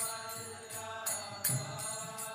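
Instrumental kirtan accompaniment between sung lines of a devotional chant: small hand cymbals (kartals) clash about twice a second over a held harmonium chord, with a low drum stroke about halfway through.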